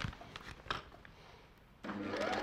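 A few light clicks and taps of fabric being handled, then near the end a Juki overlocker starts up and runs steadily.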